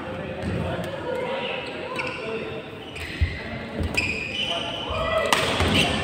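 Badminton rally in a large indoor hall: sharp cracks of rackets striking the shuttlecock, several of them about a second apart in the second half, over players' voices.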